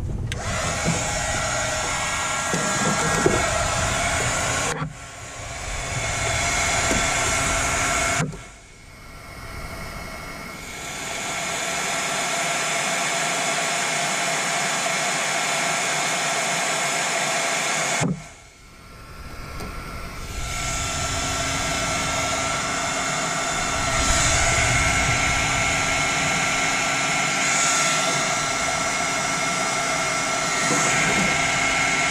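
Electric heat gun running with a steady fan whine, shrinking heat-shrink tubing over a wire. It cuts out twice, about eight and eighteen seconds in, and spins back up over a couple of seconds each time, with a shorter dip near five seconds.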